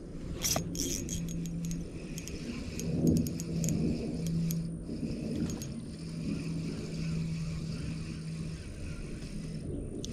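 Light clicks and clinks of fishing tackle being handled, mostly in the first few seconds, over a low steady rumble with a held low hum.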